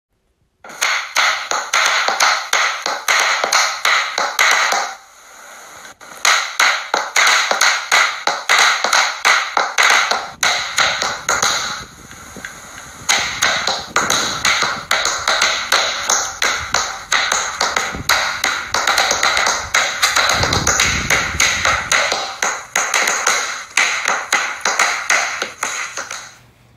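Fast, irregular runs of sharp taps, several a second, breaking off briefly about five seconds in and again around twelve seconds.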